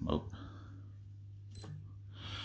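A short spoken 'oh' at the start, then quiet room tone with a low steady hum and a single faint click about one and a half seconds in.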